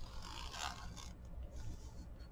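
Fine-tip pen drawn along a steel ruler across paper: a faint scratchy stroke lasting about a second, then a shorter, fainter one near the end.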